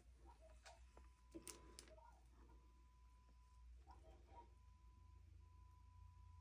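Near silence: room tone with a few faint clicks about a second and a half in.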